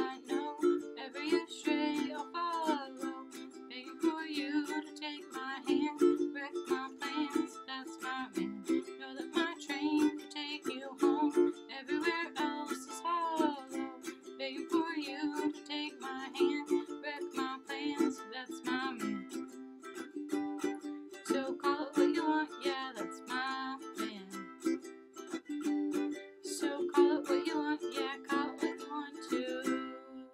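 Ukulele strummed in a steady rhythm, accompanied by a singing voice.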